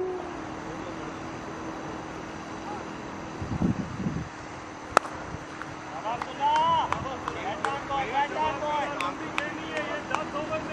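A single sharp crack of a cricket bat striking the ball about halfway through, followed by players' voices calling out across the field.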